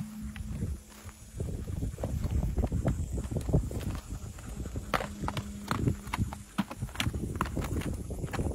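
Hoofbeats of an Arabian horse cantering over dry, rocky ground, an uneven run of sharp knocks with low thuds under them.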